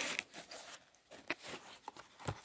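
Faint rustling of paper and a few light ticks as the card cover and pages of an old paperback manual are turned by hand.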